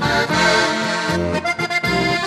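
Slovenian diatonic button accordion (a Rutar) playing a lively folk instrumental melody, with low bass notes changing about every half second underneath.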